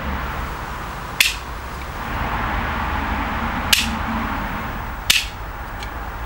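Three sharp, brief plastic snaps from a spring-loaded toy bottle-cap gun, its mechanism being worked and fired, spaced a second or more apart over steady background hiss.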